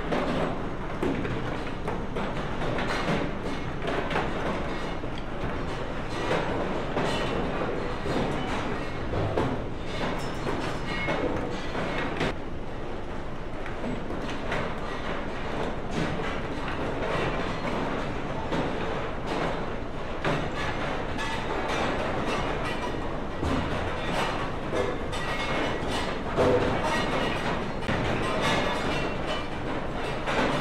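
Conveyor belt carrying lumps of hard coal: a steady mechanical rumble with frequent clattering knocks of rock throughout.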